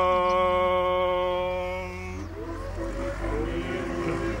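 Orthodox liturgical chant by male voices: one long note held for about two seconds, then a new phrase that slides up into a lower, wavering line. A steady low hum runs underneath.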